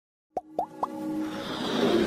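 Intro sound effects for an animated logo: three short upward-sliding blips about a quarter second apart, then a swell of music that grows louder.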